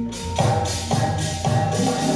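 Gamelan ensemble playing: ringing metal-keyed strikes about twice a second over low drum strokes.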